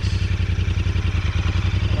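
Royal Enfield Interceptor 650's parallel-twin engine running steadily with an even exhaust beat as the motorcycle rolls along.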